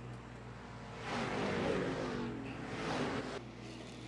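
Dirt-track hobby stock race cars' engines going by, the engine noise swelling about a second in with its pitch dropping as they pass, then falling away suddenly at a cut.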